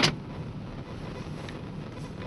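A single sharp knock right at the start, then the steady low running noise of a car heard from inside its cabin as it drives.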